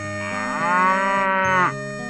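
A cow mooing: one long moo of about a second and a half that rises and then drops in pitch before cutting off, heard over background music.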